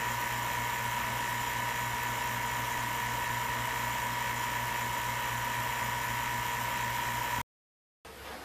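Vacuum pump running steadily, pulling vacuum on a glass-jar chamber: an even drone with a thin steady whine and a low hum. It cuts off abruptly near the end.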